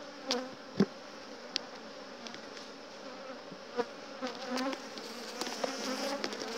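Honeybees buzzing around an open hive. A few sharp clicks and cracks come from a steel hive tool prying a propolis-glued brood frame loose.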